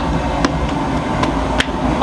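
Steady low rumble with three short, sharp knocks, about half a second, a second and a quarter and a second and a half in, from a baker working at a clay tannour bread oven.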